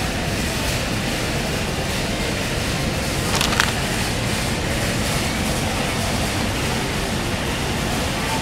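Pride Jazzy Zero Turn 8 electric mobility scooter driving up close over a tiled floor, heard as a steady hum and noise, with a short rattle about three and a half seconds in.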